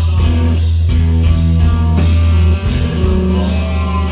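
Live rock band playing loud: electric guitars, bass guitar and drum kit, with a deep held bass note that breaks off briefly a little past halfway.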